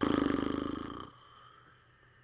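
A man's thinking noise, about a second long: breath blown out through pursed lips with a fast buzzing flutter that fades away.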